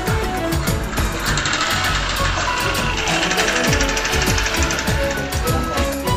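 Traditional Indian festival music driven by fast, busy drumming: rapid strokes whose deep notes drop in pitch, over a brighter sustained band of sound in the middle of the passage.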